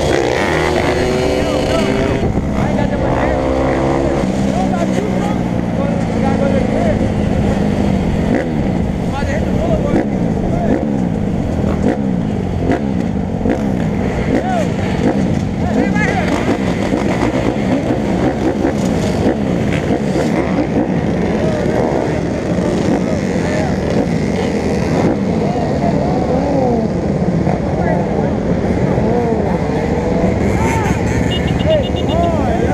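Several dirt bike engines running and revving close by, many overlapping rises and falls in pitch, with one bike revving strongly in the first few seconds.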